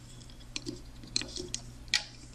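A few small, irregular clicks of a metal-tipped hook and rubber bands against the plastic pegs of a Rainbow Loom as the bands are looped from peg to peg. The loudest click comes near the end.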